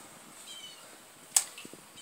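A wooden bow stave being handled: one sharp knock about halfway through, followed by a few faint lighter clicks. A faint short high chirp comes just before it.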